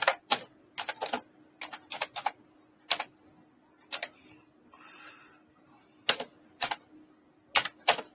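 Typing on a computer keyboard: irregular sharp key clicks, some in quick pairs and short runs, with pauses between, over a faint steady hum.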